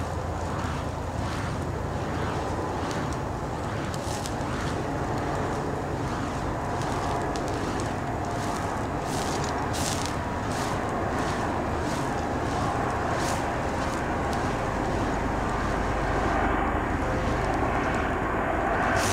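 Burning snake fire poi being spun, a continuous windy roar of flame with whooshes as the wicks sweep past, coming about one and a half times a second in the second half.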